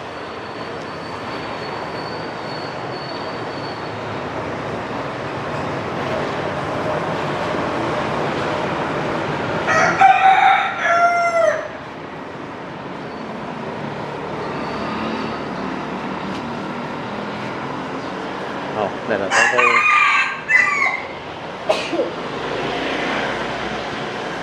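A rooster crowing twice, once about ten seconds in and again near twenty seconds, each call lasting a second or two, over steady background noise.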